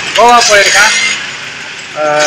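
A man's voice for about a second, then steady street noise with no speech.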